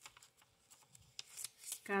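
Paper pages of a small handmade booklet rustling and flicking as they are turned by hand, with a few light clicks, the rustling busiest in the second half.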